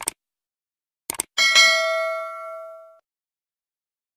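Subscribe-button animation sound effect: short mouse clicks, then a bright notification bell ding about a second and a half in that rings on and fades out over about a second and a half.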